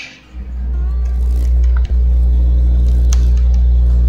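A loud, steady low hum with a faint buzz above it, swelling in just after the start and then holding level. A few faint clicks of typing on a computer keyboard come through it.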